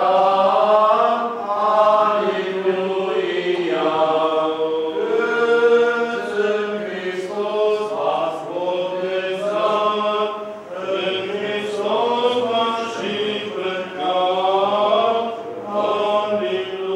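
Orthodox liturgical chant at a baptism: several voices singing a slow, unaccompanied melody with long held notes.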